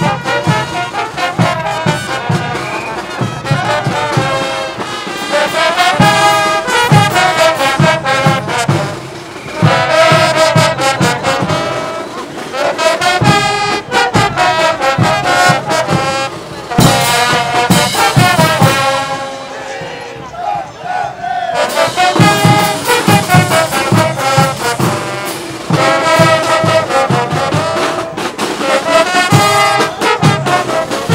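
A street brass band of trumpets and trombones over marching drums and cymbals, playing a loud, steady dance beat. The brass drops out briefly about twenty seconds in, then the full band comes back.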